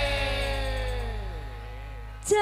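Live campursari band music tailing off: held notes slide slowly down in pitch and fade away over a steady low hum.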